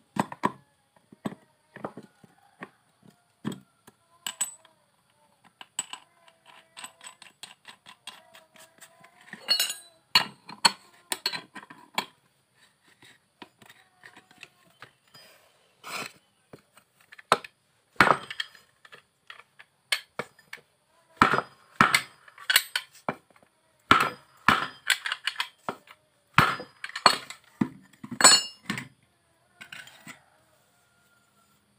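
Metal parts of a Honda Vario scooter's CVT pulley and clutch assembly clinking and knocking as they are handled and fitted together by hand: a string of sharp clicks and clanks, some in quick runs, with louder clanks in the second half.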